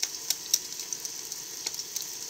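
Eggs frying in small cast-iron pans, with onions and biscuits in a frying pan, on a propane camp stove. They sizzle steadily, with a few sharp crackles.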